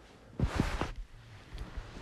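Inside a London Underground train at a station: a brief rush of noise with a few low thuds about half a second in, then a faint low rumble.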